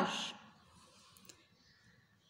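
The last of a woman's spoken word, then near silence with a few faint clicks a little over a second in.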